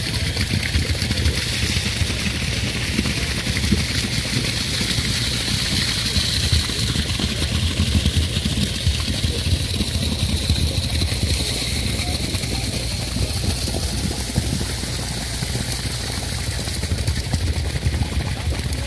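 Concrete mixer truck's diesel engine running steadily as the truck discharges concrete down its chute, a constant low drone.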